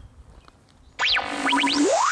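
Faint outdoor quiet, then about halfway in a synthesized logo sting starts suddenly: a few quick falling electronic chirps over a low held tone, then a long smooth rising sweep.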